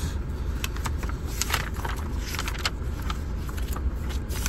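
Paper pages of a vehicle service booklet being handled and turned, giving scattered light rustles and clicks, over the steady low idle of a Toyota Hilux's four-cylinder turbo-diesel heard from inside the cab.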